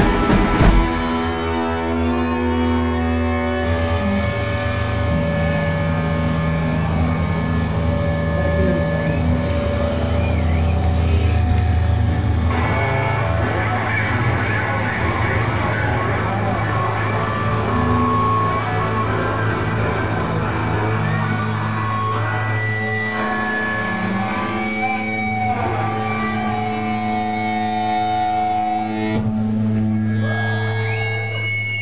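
Live rock band: drums and guitars stop about a second in, leaving long sustained electric guitar tones droning through the amplifiers, the held notes shifting slowly, with no drum beat.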